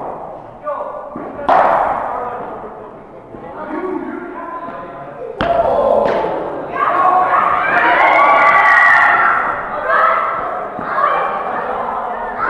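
Cricket bat striking the ball with a sharp knock about five seconds in, echoing in a large indoor hall, followed by loud calls from players and onlookers. A few lighter thuds come earlier.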